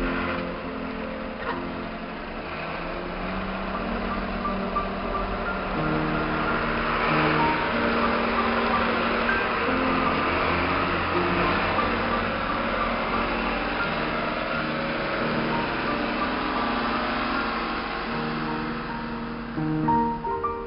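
Background music with held notes over the broad noise of snowplow trucks on a snowy street. The noise swells a few seconds in and fades near the end.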